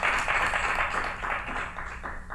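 Audience applauding, loud at first and dying away near the end.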